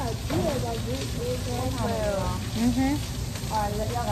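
Short-order griddle sizzling with food frying, a steady hiss under people's voices talking.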